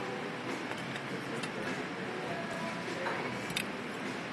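Restaurant background: indistinct chatter and room noise, with a few light clicks.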